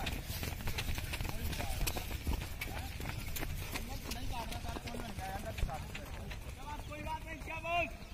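Footfalls of several runners on a dirt track, an irregular rapid patter, with shouting voices in the background and a louder shout near the end.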